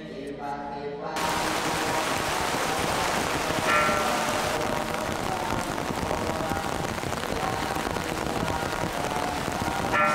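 Steady heavy rain that starts suddenly about a second in, cutting in over guitar music, which carries on faintly underneath.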